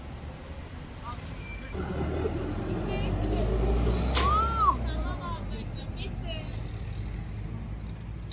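Street noise: a low vehicle rumble with indistinct voices, swelling to its loudest about four to five seconds in, with a short rising-and-falling squeak and a click near the peak.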